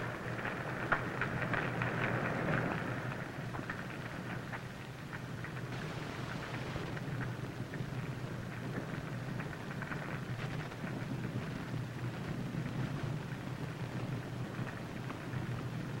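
Large building fire burning: a steady rushing roar with fine crackling, somewhat louder in the first few seconds, over a low steady hum.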